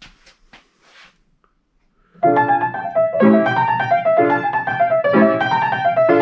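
After a few faint clicks, a Weber grand piano built by Young Chang starts playing about two seconds in, with a pattern of chords struck roughly once a second over a moving upper line. It is being played to test its action, which misbehaves because of the expanding action bracket fault.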